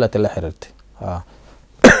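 A man gives one short, sharp cough to clear his throat near the end, after a few spoken words.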